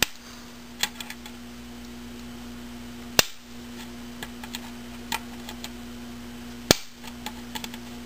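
Diagonal cutters snipping away the plastic ring around an antenna hole in a router case, each bite ending in a sharp snap as a piece breaks off. Two loud snaps fall about three seconds in and just before seven seconds, with lighter clicks between them, over a steady low hum.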